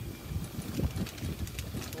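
Golf cart moving along, a steady low rumble with wind on the microphone and faint light rattles.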